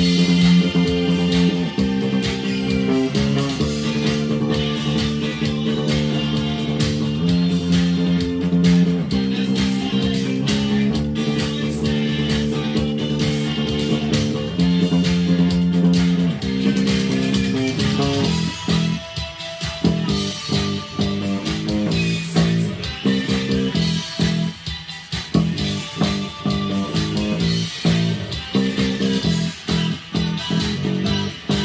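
Four-string electric bass played with the fingers along with the band recording of a new-wave song. About eighteen seconds in, the held chords give way to a choppier, stop-start passage with brief breaks.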